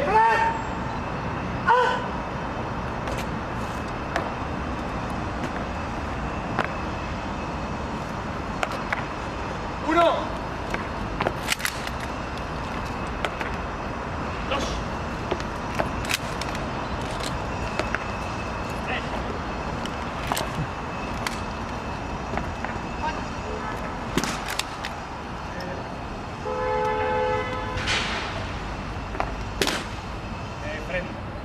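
Shouted military drill commands, a few short loud calls and one longer held call near the end, with scattered sharp clicks and knocks of rifles being handled by an honour guard during an arms inspection.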